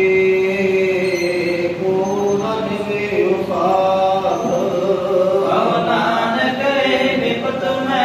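Men's voices chanting a Sikh hymn through microphones, with long held notes that slide slowly between pitches.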